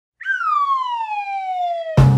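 Cartoon falling-whistle sound effect: a single whistled tone gliding steadily downward in pitch for nearly two seconds. It is cut off by a heavy thump at the very end.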